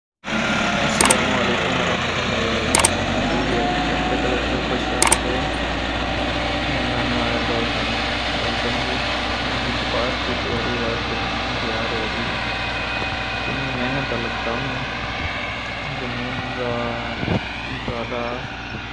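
Farm tractor's diesel engine running steadily under load as it pulls a tined cultivator through dry soil. Three sharp clicks come in the first five seconds.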